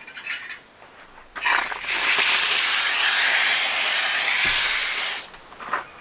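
Water spraying from a garden hose wand into a tub of topsoil to wet it: a steady hiss that starts a little over a second in, lasts about four seconds and cuts off near the end.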